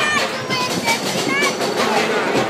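Mine-train roller coaster running along its track with a steady rattling rumble, while riders give short excited shrieks, once about a second in and again just after.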